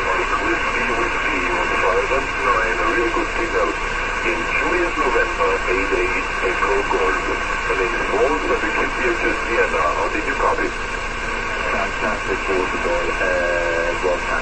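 Six-metre SSB signal on a ham receiver: steady hiss with a faint, indistinct voice in it. The voice fades in and out, a sign of QSB on a tropospheric path.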